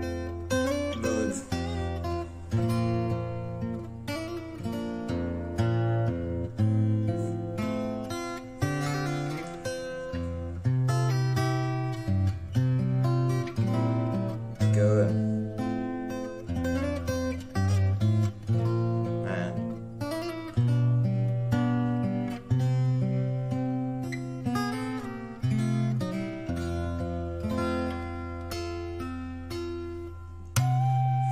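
Solo acoustic guitar played fingerstyle: a slow instrumental melody of plucked notes over ringing bass notes that change every second or two.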